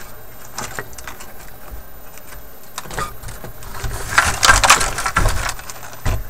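Handling noise from a vintage 160-in-1 electronic project kit in its wooden cabinet: scattered clicks and knocks from the wired panel and the wood, then a loud, dense rattling clatter from about four to five and a half seconds in as the box is lifted and tilted.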